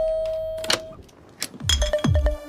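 Two-tone electronic doorbell chime ringing out and fading away, with a brief click partway through. Near the end, electronic music with a heavy bass beat starts.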